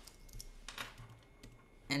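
Typing on a computer keyboard: a few faint, irregular key clicks as text is deleted and typed in a comment box.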